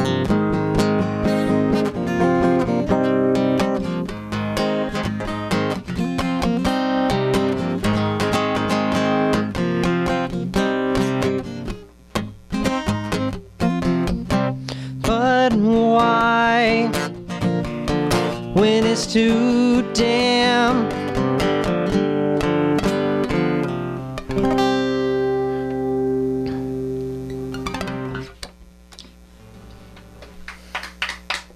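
Acoustic guitar strummed in a steady rhythm as the instrumental close of a song. It ends on a final chord that rings out and fades about three-quarters of the way through.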